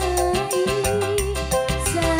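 Live dangdut band music: a long held melody note over a steady percussion beat, the note sliding down near the end.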